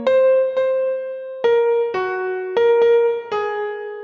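Background music: an electric piano playing a slow melody of single struck notes, about seven of them, each ringing and fading.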